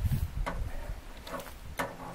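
Handling noise of gloved hands working a coyote pelt on the hanging carcass: low bumps and rubbing, with a sharp click about half a second in and another near the end.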